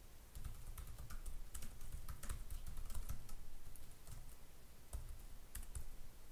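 Typing on a computer keyboard: a run of quick, irregular key clicks as a line of code is entered.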